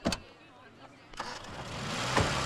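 A car door shuts with one sharp knock. About a second later a taxi's engine noise rises as it starts and pulls away.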